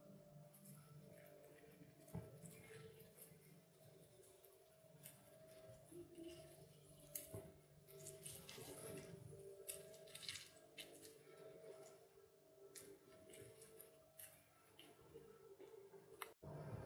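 Near silence, with faint soft squishes and drips of half a lemon being squeezed by hand over sliced onions.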